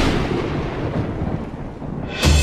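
Thunderclap sound effect: a sudden crash at the start that settles into a rumble, slowly dying away over about two seconds.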